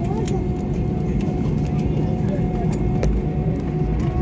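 Steady low rumble of an airliner with a thin steady whine above it, under indistinct background chatter of people's voices and a few light clicks.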